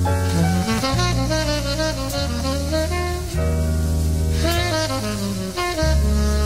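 Recorded jazz ballad: a tenor saxophone playing a slow, moving melody line over held low notes from the rhythm section.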